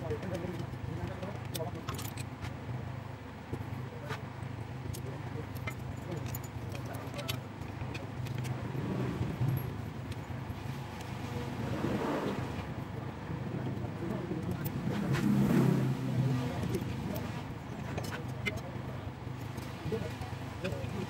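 Light metallic clicks and clinks of a timing-belt tensioner pulley and its bolt being handled and fitted on an engine. A steady low vehicle hum runs underneath, growing louder around twelve and again around fifteen seconds in.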